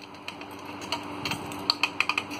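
A fire alarm pull station being reset with its key: a series of sharp plastic and metal clicks and snaps as the lock turns and the handle and cover are pushed back into place. A faint low steady hum runs underneath.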